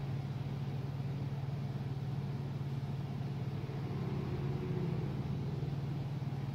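Steady low mechanical hum, like a motor running, that holds one level throughout with no clicks or other distinct events.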